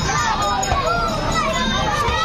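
Many voices at once, children's among them, chattering and calling out in a crowded street; no single speaker stands out.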